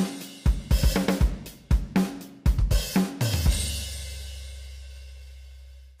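Drum kit pattern played back from a software sampler: kick, snare and hi-hat hits for about three seconds. It ends on a cymbal and a low held note, both fading out.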